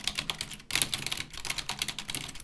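Computer keyboard typing: rapid, continuous key clicks with a short lull a little over half a second in.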